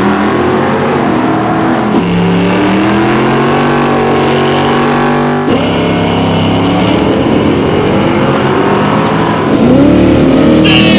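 Drag car engines revving in short clips that change abruptly about two seconds in and again past five seconds, with guitar music mixed underneath.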